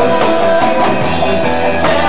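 Live band playing an instrumental passage without vocals: electric guitar, bass, keyboard and drum kit, loud and steady.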